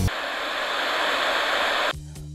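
Static hiss, steady and growing a little louder, that cuts off suddenly near the end.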